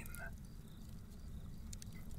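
Faint, steady low drone of a dark ambient background music bed.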